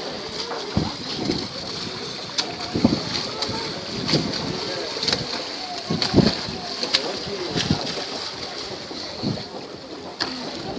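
Choppy open-sea water splashing and slapping as a swimmer strokes through waves, with irregular splashes about once a second over a steady high hiss.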